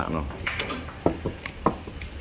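Metal spoon and fork clinking and scraping against a ceramic plate while eating, in several short clinks.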